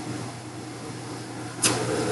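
Steady low hum and faint hiss of room background noise picked up by a desktop microphone, broken by a short sharp hiss about a second and a half in.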